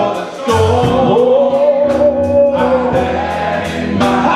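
Men's gospel choir singing. After a short break near the start, the voices come back in and hold one long note through the middle.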